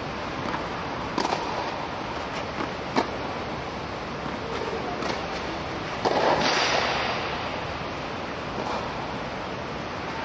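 Tennis rally on a clay court: sharp pops of racket and ball about a second in and again at three seconds, then a louder racket hit at about six seconds followed by a second of scuffing noise, over a steady rushing background.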